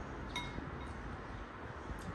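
A metal spoon clinks once against a ceramic soup bowl about half a second in, with a short bright ring, followed by a fainter tap.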